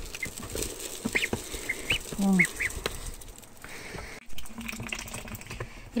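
Ducklings feeding at a bowl of mash, giving short high peeps and a lower call, with their bills clicking in the feed.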